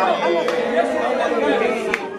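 A crowd of children's voices chanting and praying aloud all at once, many voices overlapping with no single one standing out.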